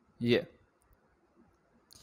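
A man says a single short word, then near silence with a couple of very faint clicks, and a soft hiss begins near the end.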